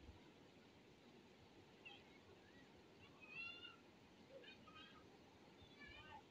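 Near silence: a faint steady hiss of rain on the street, with a few faint, short, high-pitched calls about two, three and five seconds in.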